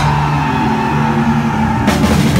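Live hardcore punk band letting a loud distorted chord ring out: electric guitars and bass held steady, with a high sustained tone over them, and a sharp drum hit near the end.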